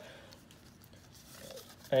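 Near quiet: faint, soft handling of Pokémon trading cards being sorted by hand, over room tone.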